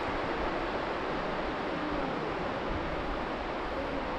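Steady rush of surf breaking on the beach, an even wash of noise with no pauses.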